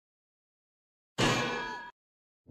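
Silence, then an intro sound effect: a single metallic clang about a second in that rings, fades and cuts off abruptly.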